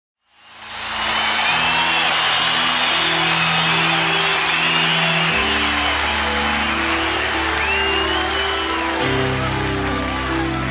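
A concert audience applauding and cheering, with whistles, over the held chords of a slow keyboard intro. The chords change about every four seconds, and the sound fades in over the first second.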